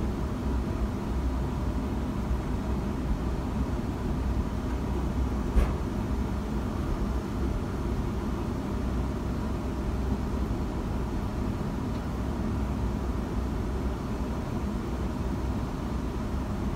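Steady low rumble inside a passenger train carriage, with a single sharp click about five and a half seconds in.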